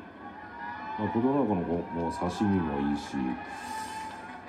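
A man commenting in Japanese on a television broadcast, played through the TV's speaker, with music underneath.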